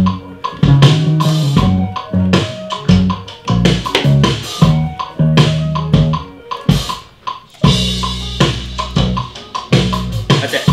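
Drum kit and bass guitar playing a rock groove together, regular drum hits over a bass line that steps between notes, with one long held low bass note about eight seconds in.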